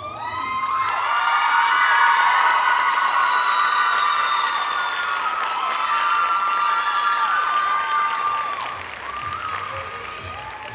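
Audience applauding and cheering, thick with high-pitched shrieks and whoops. It breaks out at the start, swells over the first couple of seconds and dies down near the end.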